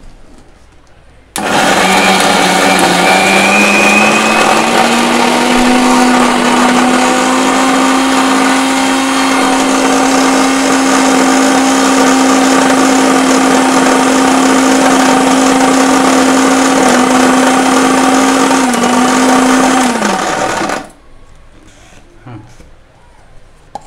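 Unitec electric mixer grinder's motor running loud and steady, grinding peanuts in its steel jar into peanut butter. Its pitch climbs as it spins up, holds, dips briefly twice and falls away as it is switched off near the end.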